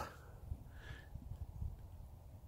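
Faint, irregular low rumble of wind buffeting an outdoor microphone, with a faint brief higher sound just under a second in.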